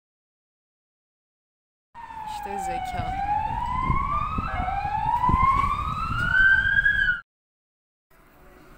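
Siren wailing, its pitch sliding up in slow repeated sweeps over low street noise, then stopping abruptly.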